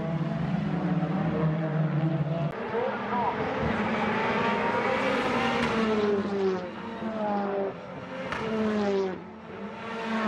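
TCR touring cars racing past, their turbocharged four-cylinder engines rising in pitch to a peak about five seconds in and then falling away, with another car's engine note dropping near the end.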